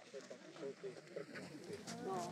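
Indistinct voices of several people talking at once, none of it clear enough to make out words.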